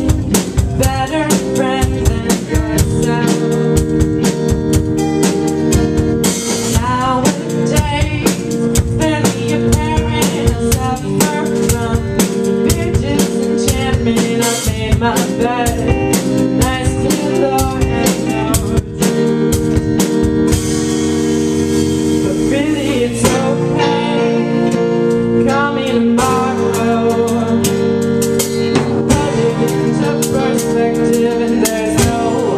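A live band playing a song: a woman singing over acoustic and electric guitars, bass and a drum kit keeping a steady beat. The drum beat breaks for a couple of seconds about two-thirds of the way through, then comes back.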